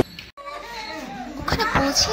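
People talking, children's voices among them, in a busy room.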